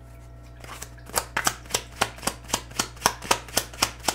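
A deck of tarot cards, the Tarot Teacher deck, being shuffled by hand. Starting about a second in, the cards slap together in a steady run of about four a second.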